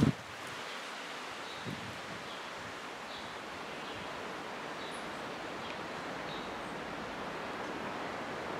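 Outdoor ambience: a steady rustle of wind and foliage, with faint high chirps scattered through it. A brief low bump right at the start.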